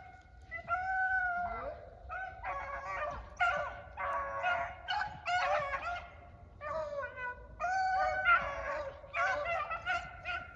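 A pack of beagles baying, several dogs giving long drawn-out bawls that overlap one another.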